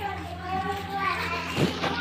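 Quieter background voices, with children's voices among them, talking and playing over a steady low hum.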